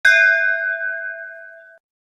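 A single bell-like ding struck once, its ringing tones fading away and then cutting off abruptly near the end.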